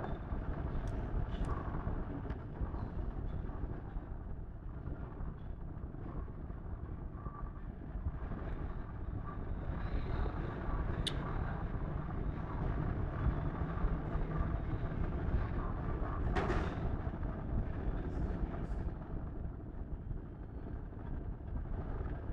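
Steady low background rumble with a few faint clicks and taps.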